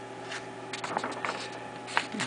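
A sheet of paper handled in the hands, with faint rustles and small crinkling clicks, over a steady low hum.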